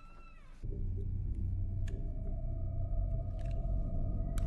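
A low, steady rumbling drone with a held high tone over it, starting about half a second in after a falling tone fades out.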